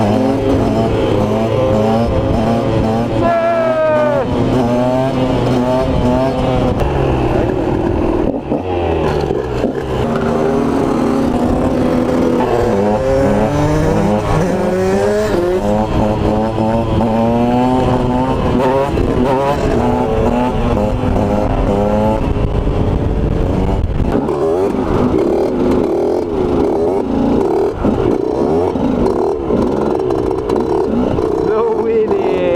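Small supermoto motorcycle engines revving hard and dropping back over and over as the riders ride and hold wheelies, the pitch climbing and falling with each twist of the throttle.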